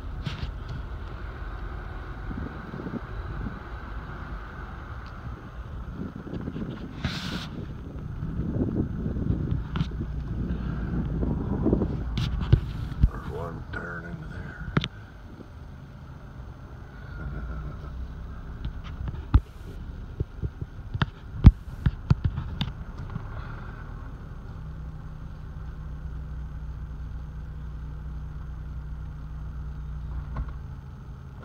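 Inside a slowly moving car: a steady low engine and road hum, with scattered clicks and knocks. The sharpest click comes about two-thirds of the way through.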